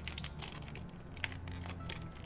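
Plastic-wrapped Scentsy wax bar crackling and clicking as it is bent to break off one cube along its perforation, with a few sharper clicks about halfway through and near the end.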